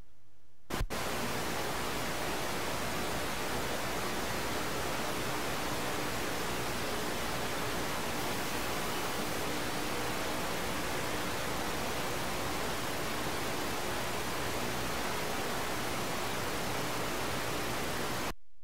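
Steady static hiss from an audio signal fault. It starts with a click about a second in and cuts off suddenly near the end, with no speech audible through it.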